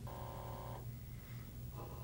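Faint electronic tone, several steady pitches sounding together, lasting under a second and returning briefly near the end, over a constant low electrical hum.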